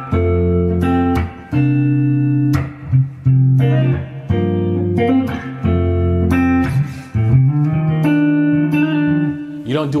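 Electric guitar, a Gibson Les Paul Standard, playing a run of sustained chords: a triad movement off a C minor chord with hammer-ons, each chord ringing for a second or so before the next.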